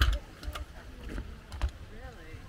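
Footsteps on a wooden boardwalk: scattered irregular clicks and knocks with low thumps, under faint distant voices.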